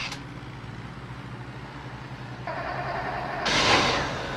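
Car engine hot-wired by touching the ignition wires together, running with a steady low hum, then picking up and swelling to its loudest near the end. A short burst of noise is heard at the very start.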